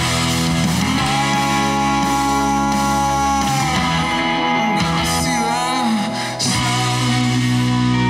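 A guitar-driven rock song playing at full level, with sustained guitar chords over bass, dipping briefly about six seconds in.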